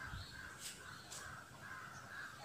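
Faint, distant bird calls, two short calls about half a second apart, over quiet room tone.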